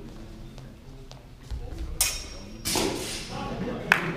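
Steel training longswords striking in a fencing bout: a sharp, loud clash about halfway through with a ringing tail, a second noisier impact just after, and a short metallic ping of blade on blade near the end, echoing in a large hall.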